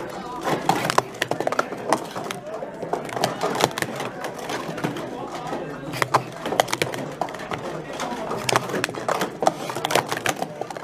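Hard plastic sport-stacking cups being stacked up and down by hand at speed: a rapid, irregular run of sharp clacks as the cups knock together and hit the mat.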